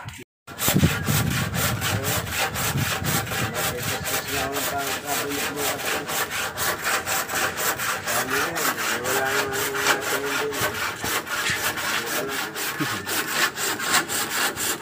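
Handsaw cutting through a wooden board, a steady run of quick strokes at about four a second.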